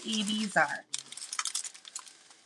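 A strip of small plastic packets of diamond-painting drills crinkling and clicking as it is handled: a run of light, rapid clicks after about the first second.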